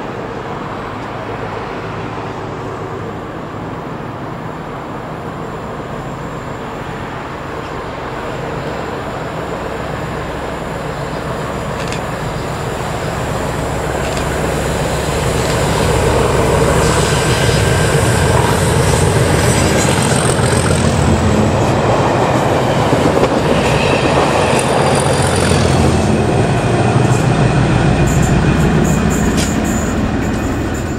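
A pair of Colas Class 37 diesel locomotives, English Electric V12 engines, working a test train that approaches and passes at speed. The sound builds from about a quarter of the way in and is loudest over the last dozen seconds, engine noise mixed with wheel and rail noise.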